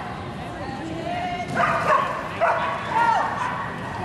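A dog barking and yipping in short, arching calls, several times from about a second and a half in, over the handler's shouted calls.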